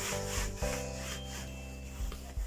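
Hands rubbing and sliding across a chessboard's surface as it is pressed flat, a scratchy rubbing strongest in the first half second and fainter after. Steady background music runs underneath.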